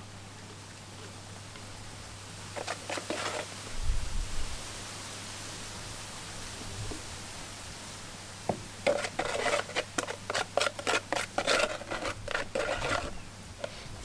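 Spoon scraping and scooping wet Stone Fix reef cement in a plastic tub and working it into the seams of the rock: a few scrapes about three seconds in, a low bump just after, then a long run of quick scrapes and taps over the last several seconds.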